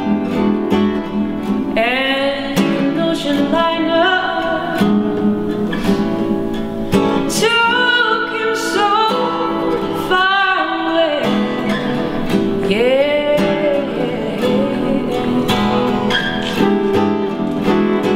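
Acoustic guitar strummed and picked, accompanying a woman singing; her voice comes in about two seconds in and carries on over the guitar.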